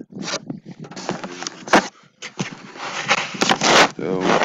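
Rubbing and scraping on the microphone of a handheld camera as it is turned: irregular rustling, a sharp knock a little under halfway, and the loudest rush of rustling near the end.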